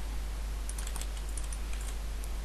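Light clicks of a computer keyboard and mouse, scattered through the second half, over a steady low electrical hum.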